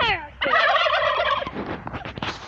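Domestic turkey gobbling: one rapid, rattling gobble lasting about a second, starting about half a second in, set off by a person's voice.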